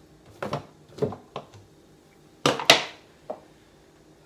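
Short plastic knocks and clicks of a NutriBullet blender cup and blade base being handled and unscrewed, with a louder double knock about two and a half seconds in as the blade base is set down on the countertop.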